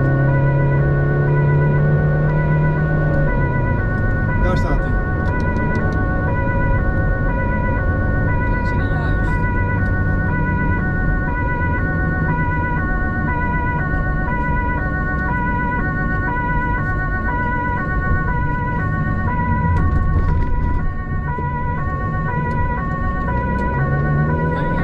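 Two-tone emergency-vehicle siren alternating steadily between a high and a low note, over engine and road noise, heard from inside the responding vehicle.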